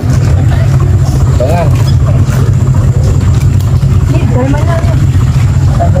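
People talking quietly over a loud, steady low rumble that runs throughout.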